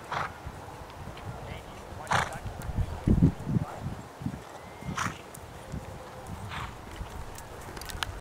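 A horse walking on grass, blowing out through its nostrils in short snorts about four times, a couple of seconds apart, with a dull low thump about three seconds in.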